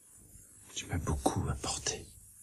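A man speaking quietly, close to a whisper, starting a little past halfway through.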